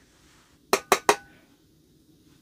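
Metal jar lid tapped three times in quick succession, each tap giving a brief metallic ring.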